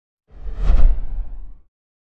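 Logo sting sound effect: a single whoosh with a heavy deep boom underneath, swelling to a peak under a second in and dying away about a second later.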